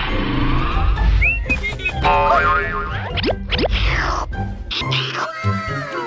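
Cartoon soundtrack: background music with comedy sound effects laid over it, including quick rising pitch glides a little over three seconds in.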